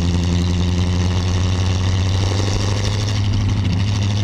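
Duesenberg Model J's straight-eight, twin-overhead-cam engine running steadily as the open chassis drives along, with an even, unbroken note.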